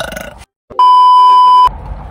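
Censor bleep: a loud, steady single-pitched beep lasting just under a second, about a second in, switched on and off abruptly after a brief drop to dead silence, covering a spoken word.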